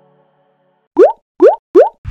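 Three quick rising 'bloop' pop sound effects, each a short upward glide in pitch, about half a second apart, starting about a second in.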